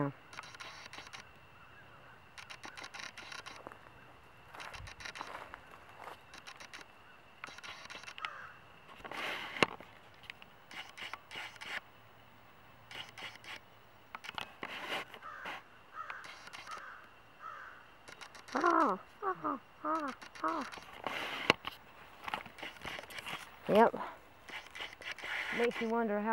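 Crows cawing, a run of four harsh caws about two-thirds of the way through, over intermittent rustling.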